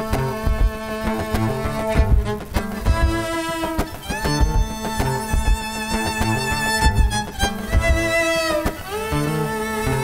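Violin played live over its own loop-station layers: long bowed notes with vibrato above a steady low held note and a regular low percussive beat.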